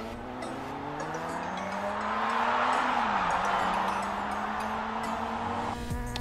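Racing motorcycle engines running hard, their pitch dropping and climbing again twice, with a swell of rushing noise in the middle.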